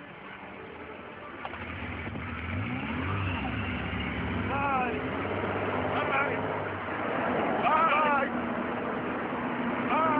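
Car engine running and growing louder as a limousine drives up. Three short rising-and-falling pitched cries, like voices whooping, come over it in the second half.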